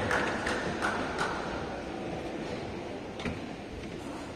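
Sports-hall background with a few scattered light taps and clicks, mostly in the first second and one more near the end, and a trace of a voice at the very start.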